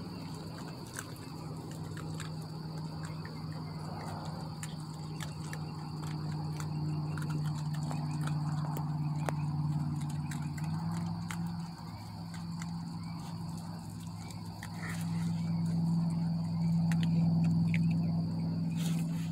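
Night outdoor ambience: a steady high insect trill over a steady low drone, with scattered small clicks and crunches from young raccoons chewing dried corn kernels.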